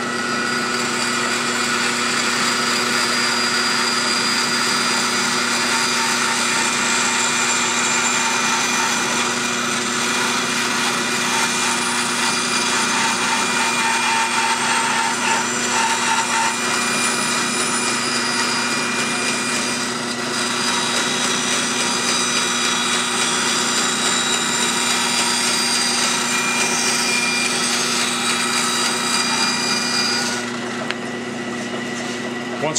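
Wood-cutting bandsaw running with a steady hum and whine while its blade cuts a long curve through a wooden board. The sound rises slightly about a second in as the cut begins and eases briefly about two-thirds of the way through.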